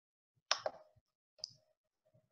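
Computer mouse clicking: a quick double click about half a second in, then a single click about a second later.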